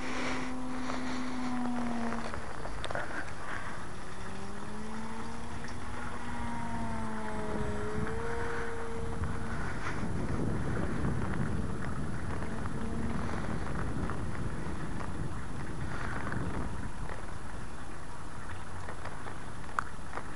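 The propeller hum of a distant electric RC Cap 232 aerobatic plane, driven by a 1150 kV brushless motor with a 9x4 prop. The hum slides up and down in pitch as the plane flies around overhead and fades after about thirteen seconds. Steady wind noise on the microphone runs underneath.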